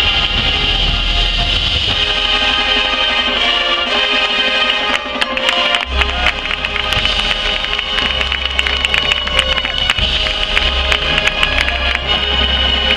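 Marching band playing held, full chords across winds and front ensemble; from about five seconds in, sharp percussion hits join the sustained chords.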